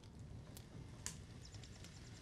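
Very quiet room tone with two faint soft clicks, about half a second and a second in.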